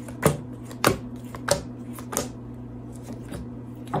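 Tarot cards being dealt one at a time from the deck onto a wooden tabletop, each landing with a sharp snap: four distinct snaps in the first two and a half seconds, then softer card handling and one more snap near the end.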